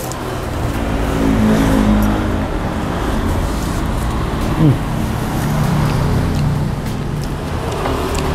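Motor vehicle traffic passing close by: a steady engine drone that swells over the first second or two and holds.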